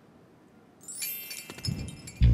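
Near silence, then about a second in a high, ringing chime sound effect from the AR book's video soundtrack, with the first low notes of its music coming in near the end.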